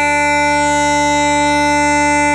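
Bagpipe music: one melody note held steadily over the continuous drones.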